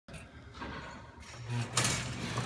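Basketball passing machine running: a steady low motor hum sets in a little over a second in, then a short burst of mechanical noise near the end as it fires a ball out to the shooter.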